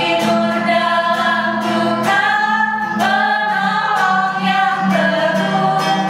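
Two women singing a worship song in Indonesian together, accompanied by an acoustic guitar strummed in a steady rhythm.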